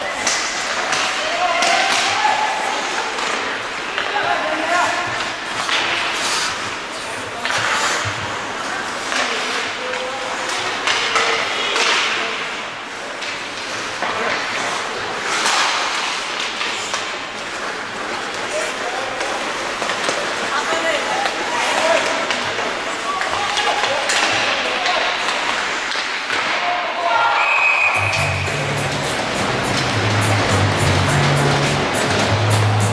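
Live ice hockey play in an arena: sharp puck and stick hits and thuds against the boards, with shouting voices over the rink's noise. Music starts about two seconds before the end.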